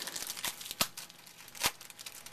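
Baseball trading cards being handled and leafed through by hand: a crinkly rustle of card stock and wrapper, with two sharper clicks, one a little under a second in and one near the end.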